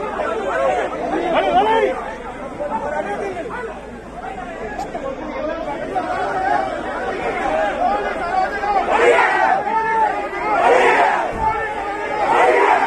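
Large crowd of people talking and shouting over one another, with louder shouts in the last few seconds.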